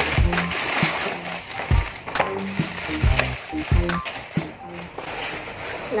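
A plastic courier mailer bag being torn open and rustled by hand, a crackly, crinkling noise. Background music with a bass beat plays underneath.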